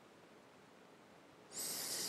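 Near silence of faint room tone, then about one and a half seconds in a sudden high-pitched hiss starts and carries on.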